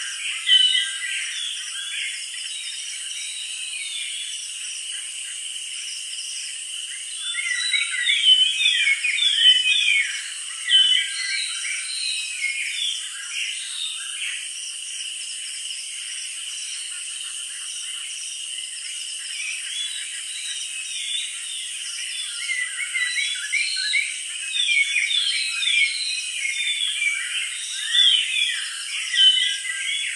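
Many small birds chirping busily over a steady high insect drone, the chirping thickening in a few busier stretches.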